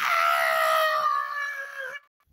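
A child screaming: one long, high-pitched scream held on one note for about two seconds, dipping slightly and cutting off at the end.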